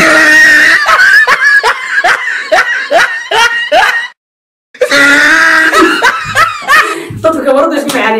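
People laughing hard in a quick run of short rising bursts, mixed with voices. The sound cuts off abruptly about four seconds in, and laughter and voices resume after a half-second gap.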